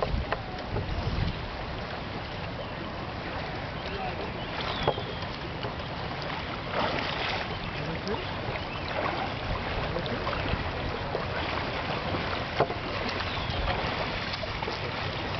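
Steady outdoor wind and water noise, with a couple of sharp clicks: one about five seconds in, one near the end.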